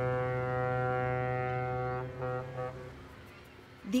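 Cargo ship's horn sounding one long blast, then a short second blast about two seconds in.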